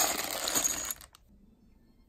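A clear plastic bag full of metal screws being handled, the screws clinking against each other with a crinkle of plastic; it stops about a second in.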